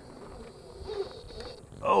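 Faint steady whine of a 1/10-scale RC rock crawler's electric motor and gear drivetrain as it crawls slowly up rock, with a few light clicks. A man's short 'oh' comes near the end.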